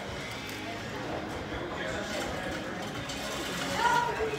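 Background chatter of a restaurant dining room: faint voices from other tables, with no loud event.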